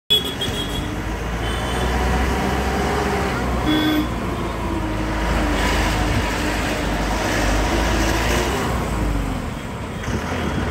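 Bus engine running and road noise heard from inside a moving bus, with a short horn toot just before four seconds in.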